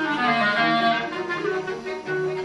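Clarinet playing with a string quartet of violins and cello, several melodic lines moving together with notes changing often.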